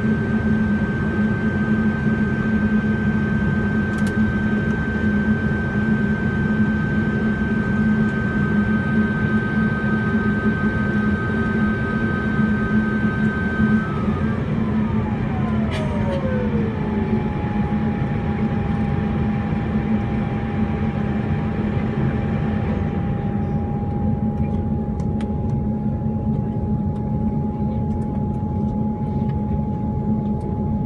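Saab 340B+ GE CT7 turboprop engine running on the ground: a steady low drone with a high turbine whine that glides down in pitch about halfway through and then holds at the lower pitch.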